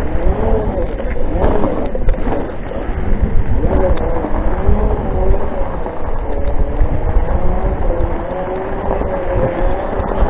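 Off-road Segway's electric drive whining, its pitch rising and falling slowly as the speed changes, over a heavy low rumble of wind and tyres on the track.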